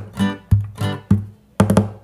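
Acoustic guitar strummed in a choppy reggae pattern, each chord cut short, with a quick run of muted percussive strokes near the end.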